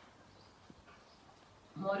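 Quiet mouth sounds of a woman eating rice and curry by hand, with one faint click like a lip smack about two-thirds of a second in; her voice comes in near the end.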